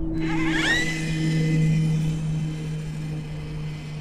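Brushless motor and geared drivetrain of an RC4WD Miller Motorsports Rock Racer in first gear, accelerating to top speed. A whine rises over the first second, then holds steady with the motor pegged.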